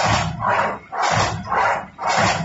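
High-speed paper straw making machine running at its stable speed of 45 m/min, its mechanism cycling in a regular rhythm of swelling, hissing bursts with a low thud, about two a second.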